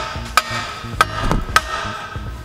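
A wooden board striking the handle of a wrench fitted on a brake caliper bolt, three sharp hits about half a second apart, each with a short metallic ring. The hits are meant to break the stuck caliper bolt loose.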